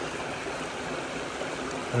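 Shallow creek water running steadily over stones and leaf litter.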